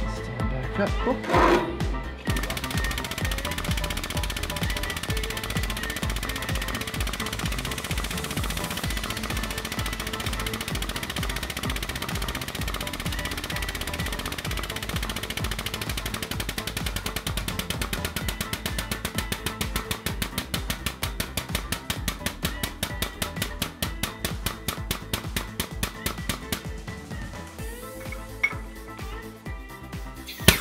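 A 32-ton air-actuated hydraulic jack's air-driven pump chattering in a rapid, even pulse as it drives a rivet press's pins down into the die. Metal knocks come in the first couple of seconds as the die block is set in place. The pulsing grows more distinct about halfway through and thins out near the end.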